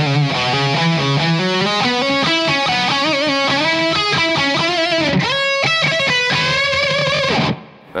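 Distorted Gibson Les Paul Custom electric guitar playing a melodic lead solo: held notes with vibrato and slides, a quick flurry of notes about five seconds in, then it stops near the end.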